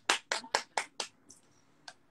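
Five quick, sharp hand claps, about four a second, followed by a couple of faint clicks.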